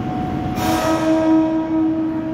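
Electric commuter train's horn sounding one steady blast that starts about half a second in with a burst of hiss and is held to the end.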